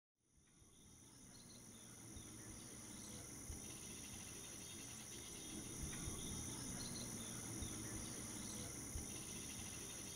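Faint outdoor ambience of insects chirring steadily in two high-pitched tones, fading in from silence over the first two seconds. A low rumble and a few soft knocks sit underneath.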